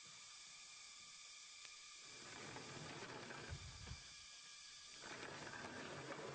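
Near silence: a faint steady hiss, with slightly louder stretches of faint noise from about two seconds and five seconds in.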